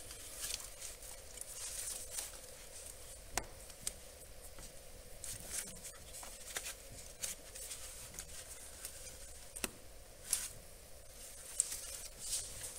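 Faint rustling and a few scattered sharp clicks from a gloved hand pressing the glow plug harness connectors down onto the glow plugs of a VW ALH TDI engine.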